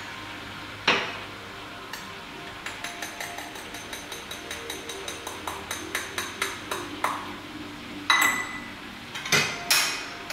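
Espresso grinder dosing into a portafilter: a rapid, even clicking of the doser lever, about five clicks a second for some four seconds, over a low motor hum. Sharp metal knocks and clinks of the portafilter about a second in and again near the end.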